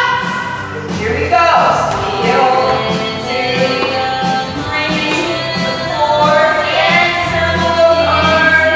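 A recorded song with singing.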